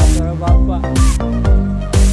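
Electronic dance music with a steady beat, about two beats a second, over held synth chords and a gliding melody.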